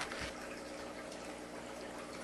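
Quiet steady background hiss with a faint hum, with a soft low knock just after the start.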